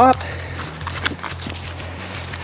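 Backpack fabric and straps rustling as the pack is handled, with a few faint small clicks.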